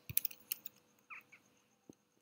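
A quick run of computer keyboard clicks, then a brief high chirp a little after a second in and a single click near the end.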